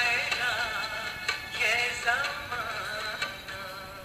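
A wind-up horn gramophone playing an old shellac record: a singer with a wide vibrato, thin and tinny with no bass, fading down toward the end.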